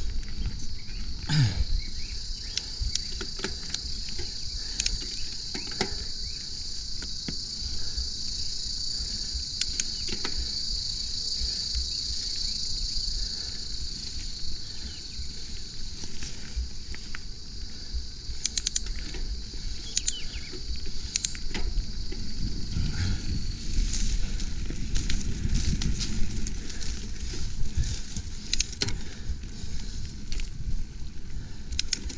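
Mountain bike ridden fast down a dirt forest singletrack: a continuous low rumble of tyres and wind, with frequent clicks and rattles from the bike over bumps, busiest and loudest near the end. A steady high insect drone sounds from the surrounding woods and fades out about three quarters of the way through.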